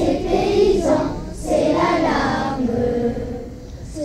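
A choir of children singing in unison, in phrases with short breaks about a second in and near the end.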